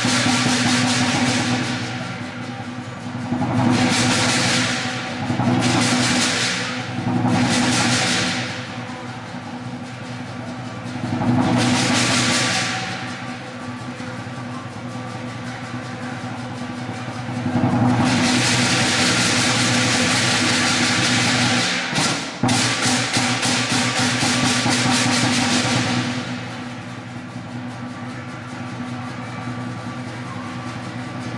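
Traditional lion dance percussion: a large lion drum beaten in rapid rolls together with clashing cymbals. The music swells into loud, cymbal-heavy stretches several times, the longest in the second half, and eases back between them.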